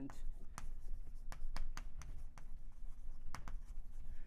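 Chalk writing on a blackboard: an irregular run of sharp taps and short scratches as a word is written out.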